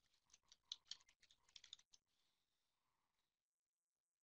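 Faint computer-keyboard typing in quick runs of clicks, stopping about two seconds in; the sound then cuts to dead silence a little after three seconds.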